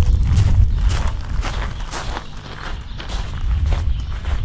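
Footsteps crunching on gravel, about two steps a second, over a steady low rumble.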